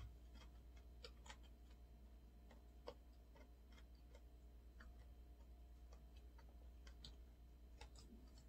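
Faint, irregular soft clicks of a person chewing food with the mouth closed, over a low steady hum.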